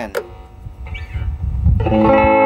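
Amplified Stratocaster-style electric guitar on its middle pickup setting: a short click, then a low rumbling handling noise, then near the end a chord struck that rings on loudly.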